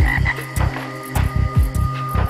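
Instrumental background music: deep bass notes in a repeating pattern, some sliding downward in pitch, with clicking percussion and a held high note.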